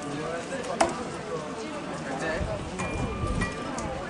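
Background chatter of several people talking, with one sharp knock about a second in.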